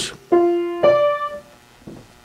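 Two piano notes played on a keyboard, struck about half a second apart, each ringing and fading.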